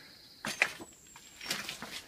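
Footsteps crunching on fire debris and broken rubble, in two short clusters about a second apart.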